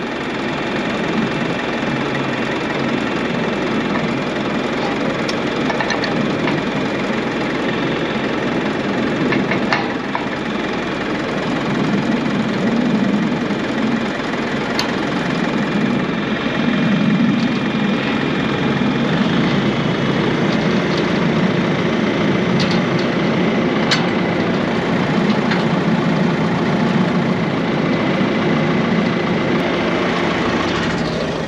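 Tractor diesel engine idling steadily close by, with a few sharp metallic clicks from the front three-point linkage and its pins being handled.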